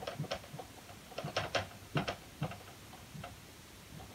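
Whiteboard marker writing on a whiteboard: a scatter of short, irregular clicks and taps as the tip strikes and lifts off the board, most of them in the first two and a half seconds.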